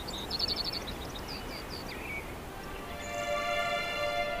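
Small birds chirping: a quick trill of about seven high notes, then a few separate chirps, over a low steady background hiss. Soft sustained music notes come in near the end.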